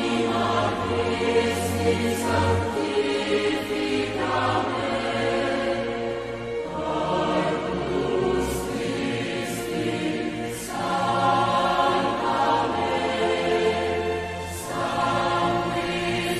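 Choir singing a hymn in long held notes, the sung phrases changing about every two seconds.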